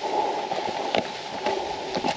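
Footsteps on the loose rocks of a scree slope, with a few sharp clicks about a second apart over a steady rushing noise.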